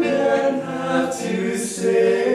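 A small vocal group singing together in harmony, several voices sustaining notes at once, with sharp 's' sounds about halfway through and near the end.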